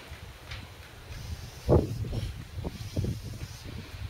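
Marker pen drawing on a flipchart pad: a run of short, uneven strokes under a low steady rumble.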